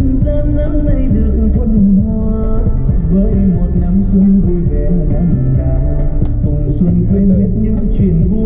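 Music playing loudly and without a break: a wavering melody line over a heavy low bass.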